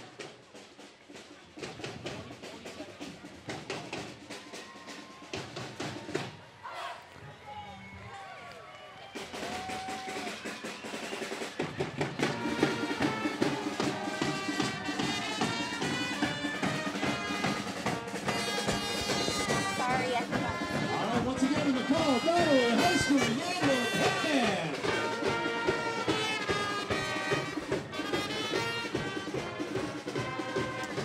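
High school pep band playing. Drums keep a beat alone at first, then trumpets and low brass, including a sousaphone, come in about ten seconds in and the music grows louder.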